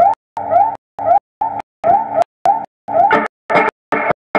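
Electric guitar playing blues with repeated upward slides in pitch, run through an echo unit into an amp. The sound is chopped into short bursts with abrupt silent gaps about two or three times a second, a stutter or dropout in the recording. It turns fuller and brighter in the last second.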